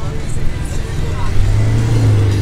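Car engine running steadily at idle close by, most likely the Mitsubishi Lancer Evolution's turbocharged four-cylinder. Its low hum grows louder and steadier about one and a half seconds in, as the car comes close.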